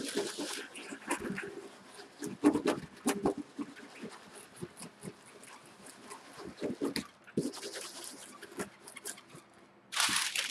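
Small handheld baren rubbed back and forth over parchment paper on an inked lino block, an irregular scratchy rubbing with many short strokes as the print is burnished by hand.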